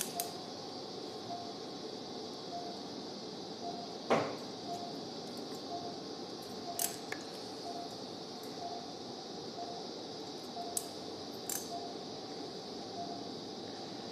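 Operating-room sounds under a steady hiss: a faint short beep repeating about every 0.7 seconds, typical of an anaesthesia monitor's pulse tone, with occasional metal clicks and clinks from the steel needle holder and forceps as suture knots are thrown. A louder knock comes about four seconds in.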